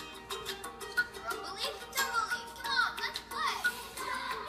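Children's TV show music playing in the room. High voice-like sounds slide up and down over it in the second half.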